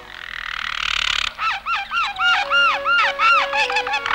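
Cartoon canary chirping: a run of quick, rising-and-falling whistled warbles, about three a second, over a few soft held notes of background music. A soft airy hiss fills the first second or so.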